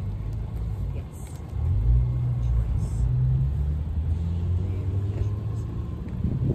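Car engine running close by: a low, steady hum that gets louder about a second and a half in.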